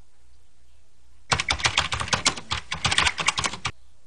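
A rapid run of sharp clicks like typing on a keyboard, starting about a second in and stopping abruptly after about two and a half seconds, over a faint low hum.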